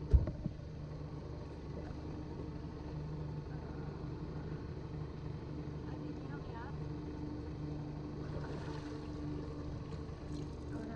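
Boat outboard motor idling steadily with a low hum, the boat sitting still. A single sharp thump sounds right at the start.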